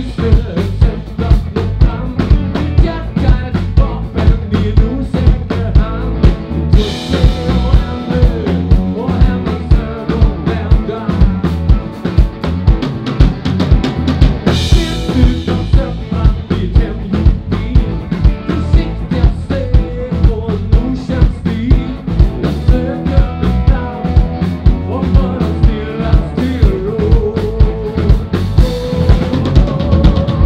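Rock and roll band playing an instrumental passage: a drum kit keeps a steady beat on bass drum and snare under electric guitars and bass guitar. Cymbal crashes come about seven and fourteen seconds in.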